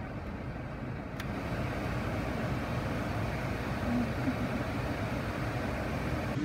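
Steady cabin noise inside a car with its engine running, with a single sharp click about a second in.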